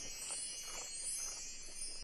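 Editor's sparkle chime sound effect: a high, glittering shimmer like a wind chime, moving in repeated sweeps and cutting off suddenly.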